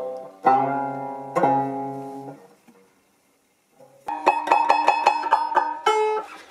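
Four-string banjo with a hide head being plucked. Two single notes ring out and fade, then after a short pause comes a quick run of repeated plucks across the strings, about six or seven a second, with the notes ringing together.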